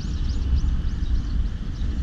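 Outdoor ambience: a fluttering low wind rumble on the microphone, with small birds chirping faintly.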